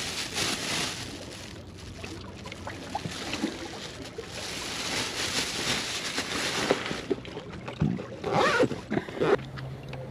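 Small waves washing and sloshing against the rocks of a rock wall, with rustling and a quick run of knocks and clatter from gear being handled in a tackle bag near the end.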